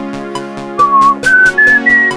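Synthesizer music: a sustained synth pad chord under an even pulse of short beats, with a pure, whistle-like lead synth melody coming in about a second in and stepping up through several short higher notes.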